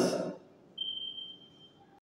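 A steady high-pitched squeal lasting about a second, starting a little under a second in: the casters of a wire shopping trolley squealing as it starts rolling across a tiled floor. It follows the tail end of a man's word.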